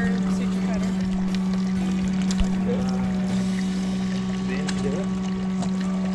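Small water pump running with a steady low hum, circulating water through the tube into a white bass's mouth to keep its gills irrigated during tracker-implant surgery.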